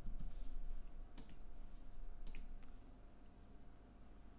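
Computer mouse clicks: a single click, then a quick pair about a second in and another few about two and a half seconds in, over a faint low hum.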